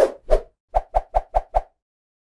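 Logo sting sound effect: a quick string of short pops, the last five evenly spaced at about five a second, stopping abruptly.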